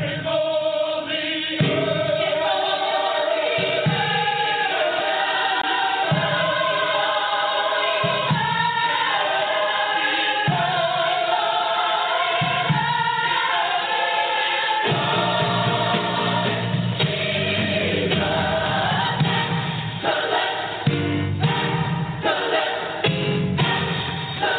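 Gospel choir singing long, wavering held notes, with a fuller low accompaniment coming in about two thirds of the way through.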